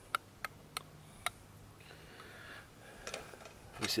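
A few light, sharp clicks, four of them in the first second or so and two more near the end, with a faint rustle between: small metal and packaging items being handled on a rock.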